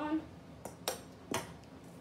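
A small ball, just struck with a hockey stick, knocking sharply off the room's walls and surfaces three times in quick succession, the second and third knocks the loudest, hard enough to dent the wall.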